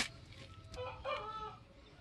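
A faint bird call lasting about a second, in the middle of an otherwise quiet moment.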